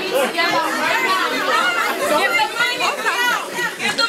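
Chatter of several people talking over one another: a dense, loud babble of overlapping voices.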